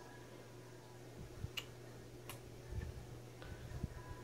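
Faint handling sounds of hair being parted and combed with a plastic comb: two light clicks and a few soft thumps over a faint steady hum.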